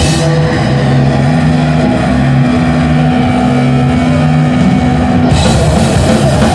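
Crust punk band playing live, loud and distorted, with bass, guitar and drums. Low notes are held steady while the bright top end thins out just after the start, then the full band's top end comes back in near the end.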